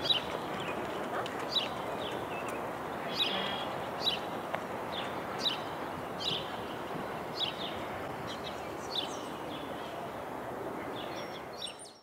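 Small birds chirping in repeated short, high calls over a steady outdoor background noise, the whole fading out at the very end.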